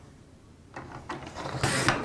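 Paper trimmer's sliding blade drawn along its rail, cutting through paper: a scraping rub that builds about a second in and is loudest just before the end.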